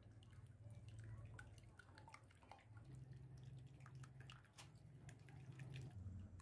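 Faint, irregular ticking and splashing of raw egg being whisked with a silicone balloon whisk in a glass bowl, over a low steady hum.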